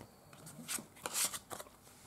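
Stiff old postcard and photo card paper rustling and sliding against each other as they are handled, in a few short scrapes around the middle.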